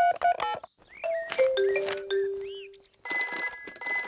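Cartoon mobile phone keypad beeps as a number is dialled, then a short falling run of electronic tones. About three seconds in, a telephone starts ringing with a steady electronic ring.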